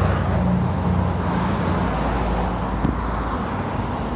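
Road traffic on a busy street: car engines running and tyres on the road, a steady low engine hum that eases off in the second half, with one short tick near the end.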